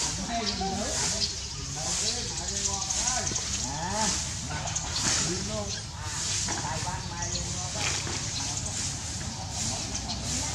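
Voices talking in the background over a steady high hiss.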